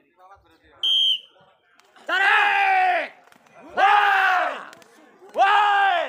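A short shrill whistle, then men shouting three loud, long drawn-out calls, each falling in pitch at its end: pigeon handlers calling their racing pigeons down while waving hen pigeons.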